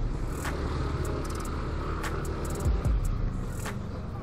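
Yamaha Aerox 155 scooter's single-cylinder engine running steadily at low riding speed, with road rumble and a couple of low bumps in the second half.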